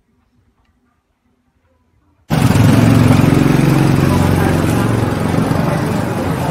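Street sound that starts suddenly about two seconds in: a motorcycle engine running close by, with people's voices.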